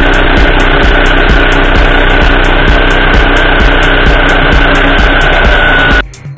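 A table-mounted electric power tool runs steadily at full speed, a dense motor noise with a high, steady whine, and cuts off suddenly at the end. An electronic dance beat runs faintly underneath.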